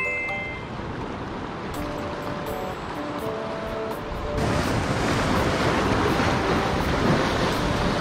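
Sea surf washing against a rocky shore. About halfway through it grows louder as a swell surges up over the rocks. Soft background music plays underneath.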